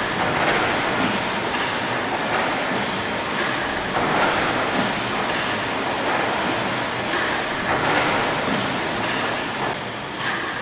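Large horizontal stationary steam engine running, a steady mechanical clatter and hiss that swells about once a second with each stroke.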